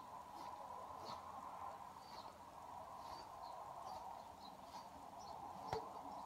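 Quiet, with a steady faint hum, a few faint high ticks and chirps, and one sharp metallic click near the end, as a stainless-steel membrane-vessel compression tool is wound in by its T-handle.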